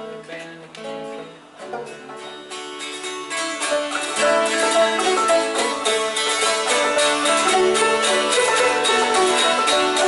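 Acoustic string band of guitars, banjo and fiddle playing a tune. For the first few seconds only a few sparse notes are picked. About four seconds in the whole group comes in, fuller and louder.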